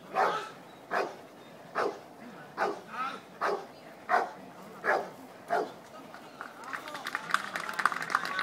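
A large dog barking, single barks about once a second, eight or nine times. Near the end, a patter of hand-clapping starts and grows.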